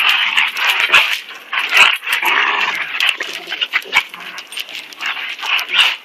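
A German Shepherd and a German Shepherd–Rottweiler mix play fighting, growling at each other in rough, noisy bouts with sharp snaps and clicks scattered throughout.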